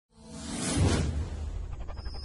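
Intro whoosh sound effect swelling from silence to a peak just under a second in, then easing off over a steady deep bass note from the logo sting's music.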